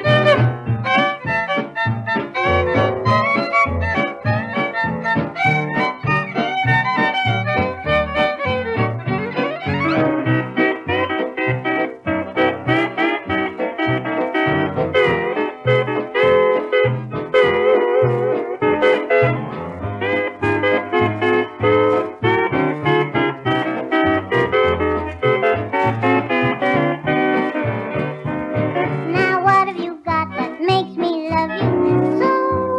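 Instrumental break of a 1951 western swing record played from a 78 rpm disc: a string band with guitar lead over a steady plucked bass beat, with one sliding note about ten seconds in.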